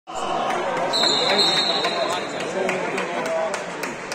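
Sounds of an indoor futsal game in a large gym hall: players' voices calling out, with many sharp knocks of the ball being kicked and bouncing on the hard floor. About a second in, a high steady tone holds for about a second.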